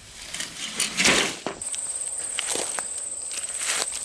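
Footsteps rustling through dry grass and leaves, loudest about a second in. Then, from about one and a half seconds in, a steady high-pitched insect trill starts and keeps going.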